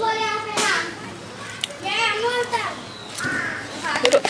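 Children's voices calling and shouting: a long call at the start, another around two seconds in, and a shorter one after three seconds.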